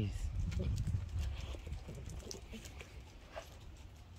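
Light scattered taps and clicks of small dogs' claws and footsteps on a wooden deck and concrete patio, over a low rumble that fades during the first couple of seconds.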